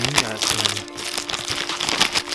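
Crinkling of plastic candy wrappers as a hand rummages through a bag of fun-size 3 Musketeers bars, with background music holding steady notes underneath.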